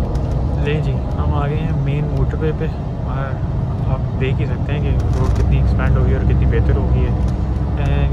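Steady low rumble of a double-decker coach cruising on the motorway, heard from inside the cabin, with people's voices talking over it.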